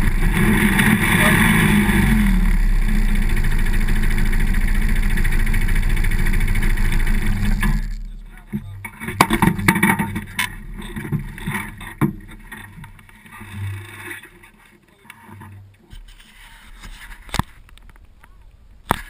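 ATV (quad bike) engine running steadily while the quad stands still, then cut off about eight seconds in. After that come scattered sharp clicks and knocks of handling close to the handlebar-mounted camera.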